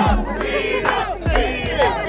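A crowd of people shouting and cheering together, many voices overlapping, with gusts of wind rumbling on the microphone.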